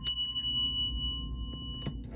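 Small brass hand bell struck twice near the start, then ringing on with a clear, steady tone and higher overtones for nearly two seconds, slowly fading.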